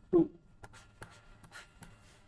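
Pen or stylus strokes on a writing surface: a run of short scratches and taps as handwriting and underlines are drawn, with a spoken 'two' just at the start.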